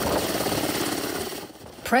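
Helicopter in flight: a dense, fast rotor and engine chatter mixed with rushing wind, fading shortly before the end.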